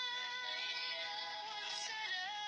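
A song playing: a sung voice holding long, steady notes.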